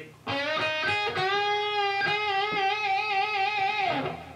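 Electric guitar playing an A minor pentatonic lead lick. A few quick notes lead into a note bent up a whole step on the G string about a second in. The bent note is held with vibrato for nearly three seconds, then cut off just before the end.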